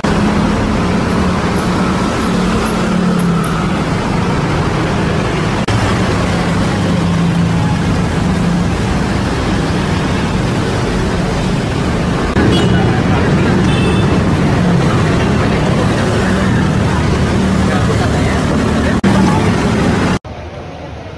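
Steady street traffic from motorcycles and cars passing on a city road, with a continuous engine hum under the noise of passing traffic. It gets a little louder about twelve seconds in.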